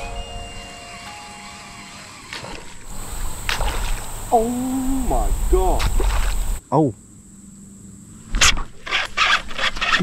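Bass striking a topwater sunfish lure at the surface: a splash and slosh of water, heard through noise on the microphone.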